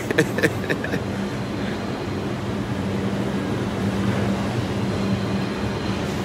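Steady low mechanical hum with an even background hiss: the drone of a large store's machinery.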